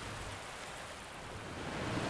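Flowing river water, a soft, even hiss that grows a little louder near the end.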